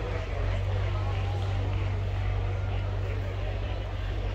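A steady low engine hum, with people talking in the background.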